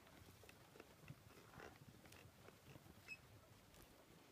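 Near silence: faint scattered ticks, with a short, faint high chirp about three seconds in.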